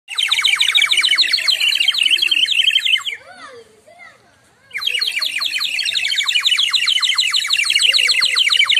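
Water-filled terracotta bird whistle (clay water warbler) blown in a rapid bubbling warble. It plays in two long bursts with a pause of about a second and a half near the middle.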